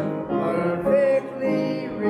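Church congregation singing a hymn in slow phrases of held notes, with a short break between phrases about a second in.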